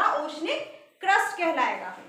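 A woman's voice speaking in two short bursts, the second starting suddenly about a second in.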